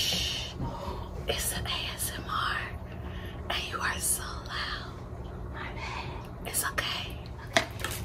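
Close-miked ASMR eating sounds: boiled crawfish and crab shells being peeled and cracked by hand, with a scattered run of sharp clicks and wet, hissy rustles, over a low steady hum.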